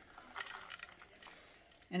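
Chopped toffee bits sprinkled by hand onto a crumb topping in a glass baking dish: a faint, loose scatter of light ticks, mostly in the first second.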